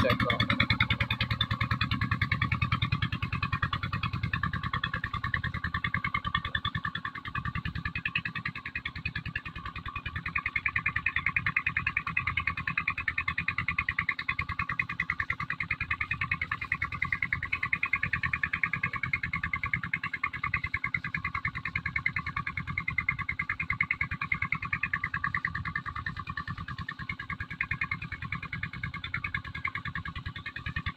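An engine running steadily with a fast, even chug, driving the tubewell pump that is sending water through the hose.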